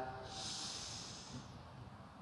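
A person drawing a slow, deep breath in through the nose, lasting about a second and a half and fading out: the preparatory inhale before kapalbhati breathing.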